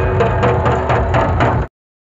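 Drums beating in a procession over a crowd's din, with several sharp strokes a second. The sound cuts off suddenly about a second and a half in, and silence follows.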